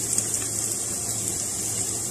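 Chopped onions sizzling in hot oil in a nonstick pan: a steady high hiss, with a couple of faint ticks near the start.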